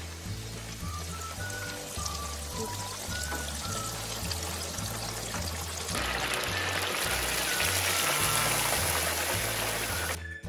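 Panko-breaded pork chops frying in the oil of a deep-fat fryer, a steady sizzle and bubbling that grows much louder about six seconds in. Background music with a repeating bass line plays throughout.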